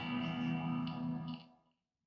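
A guitar chord ringing out and slowly dying away, then cut to dead silence about a second and a half in.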